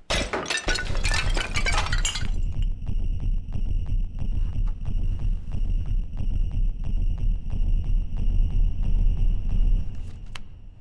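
A painted ceramic vase smashing on a tile floor, a crash of breaking pottery lasting about two seconds, followed by a film-score drone: a deep low rumble under a steady high ringing tone.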